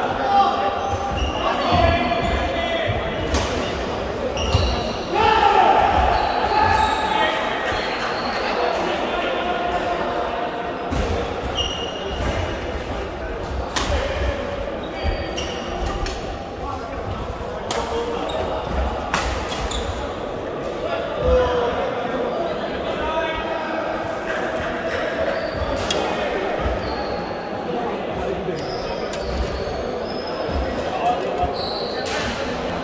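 Badminton play in a large sports hall: sharp racket strikes on a shuttlecock at irregular intervals, echoing in the hall, over voices of people talking around the courts.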